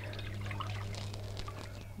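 Water poured from a terracotta plant saucer into a ceramic bowl: a steady splashing pour with small drips and trickles.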